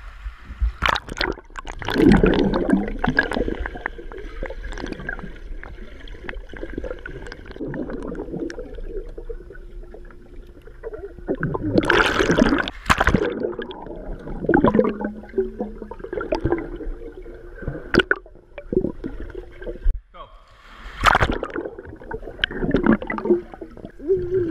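Swimmers splashing in a pool, with muffled gurgling and bubbling as the camera goes underwater. The splashes come in irregular bursts, the loudest about halfway through and again near the end.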